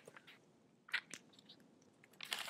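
A folded paper tract handled in the fingers close to the microphone: faint crinkles and small clicks, once at the start and a few about a second in.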